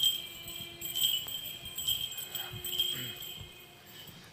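Small bells on a swinging metal censer jingling in a steady rhythm, a fresh jingle about once a second, ringing on in a reverberant church.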